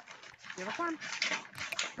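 Speech only: a few short spoken words over the room microphone.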